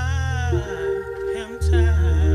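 A woman singing a held, wavering note into a microphone over sustained low instrumental notes; the low accompaniment drops away about half a second in and returns with a new sung phrase near the end.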